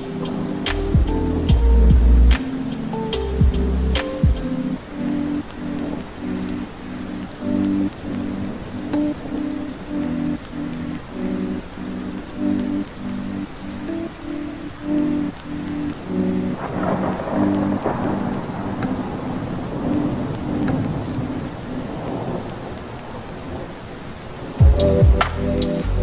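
Rain with rumbles of thunder mixed under a soft lo-fi keyboard melody. The bass beat drops out after about four seconds and comes back near the end, and a noisy swell of rain and thunder rises in the middle.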